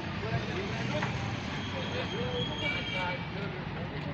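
Steady low rumble of road traffic and engines, with faint distant voices and a few brief faint high tones partway through.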